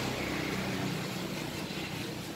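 A steady low mechanical hum, like an engine or motor running, fading slightly toward the end.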